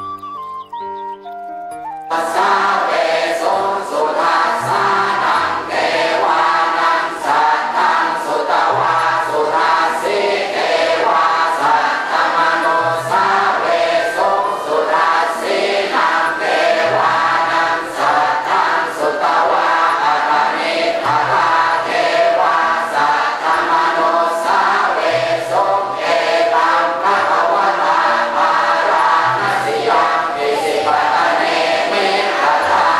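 A few clean musical notes for about the first two seconds, then a large congregation chanting Buddhist verses in unison, with a steady pulse of about two syllables a second.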